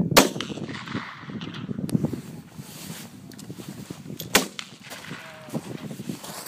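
A .308 Winchester Model 70 Stealth rifle with a muzzle brake fires a single sharp shot just after the start. A second rifle shot follows about four seconds later.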